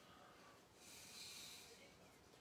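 Near silence: room tone with one faint, soft breath-like hiss that swells about a second in and fades before the end.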